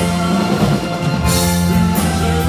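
Live band playing a rock song with drum kit and electric guitar at a steady, full level.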